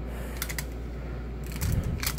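Plastic clicking and ratcheting from an Indominus Rex action figure's mechanism as it is worked by hand: a few clicks about half a second in, then a cluster of clicks with a dull bump near the end.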